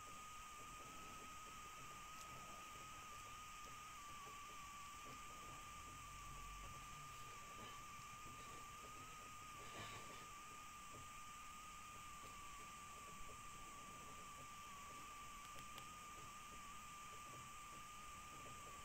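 Near silence: a faint hiss with a steady, thin high-pitched whine.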